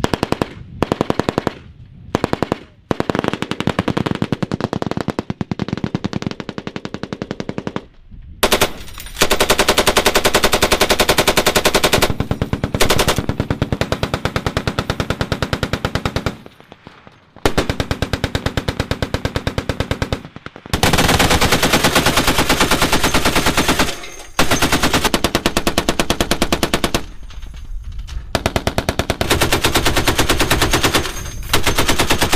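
Belt-fed machine guns firing long bursts of rapid automatic fire, broken by several brief pauses; an M2 .50-calibre heavy machine gun is among them.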